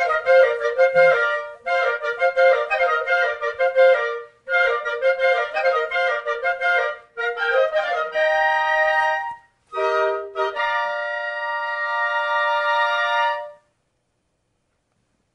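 Flute playing one part of a band score on its own: three quick phrases of fast-running notes, then a few held notes ending on one long sustained note that cuts off near the end.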